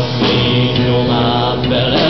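Live guitar band music between sung lines, with long held notes, recorded on a mobile phone.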